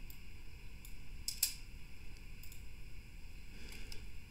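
A handful of faint, short clicks from a computer keyboard and mouse, scattered over a low steady background hiss.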